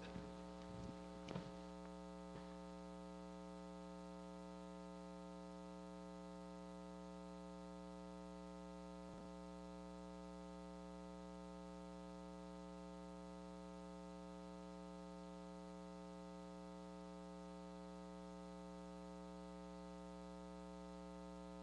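Steady, faint electrical mains hum with a stack of even overtones, with a few faint clicks in the first two and a half seconds and one more about nine seconds in.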